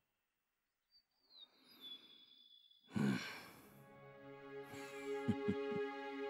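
A short breathy sigh about three seconds in, after a near-silent start. Drama soundtrack music then comes in with sustained chords and a few low plucked notes near the end.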